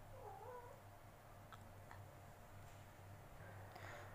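Near silence: low room hum, broken by one faint, short pitched call in the first second and two faint clicks a little later.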